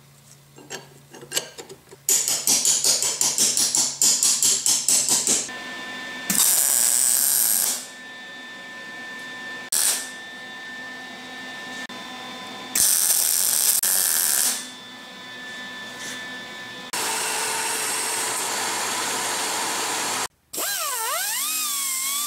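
Metalworking on a steel sleeve: quiet handling clicks, then a wire-feed (MIG) welder crackling in quick pulses and in two longer hissing runs as the seam is welded. In the last few seconds an air-powered disc sander grinds the weld steadily, its pitch wavering as it is pressed in.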